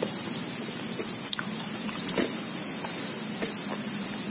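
Crickets chirring in a steady, high-pitched chorus.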